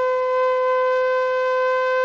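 A flute holding one long steady note.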